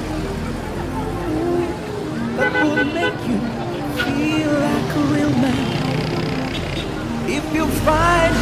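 A car pulling away and driving along a busy street, its engine and road rumble low under steady crowd chatter.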